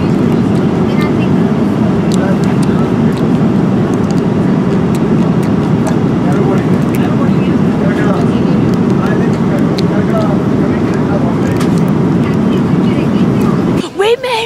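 Jet airliner cabin noise in flight: a loud, steady low roar of engines and rushing air.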